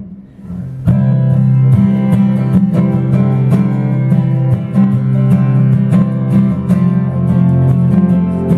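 A live band starts a song about a second in, acoustic guitars strumming a steady rhythm with other guitars behind them.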